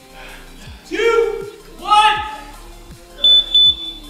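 Gym interval timer beeping twice, two short high beeps marking the end of a work interval, over background music with a steady beat. A voice cries out loudly twice before the beeps.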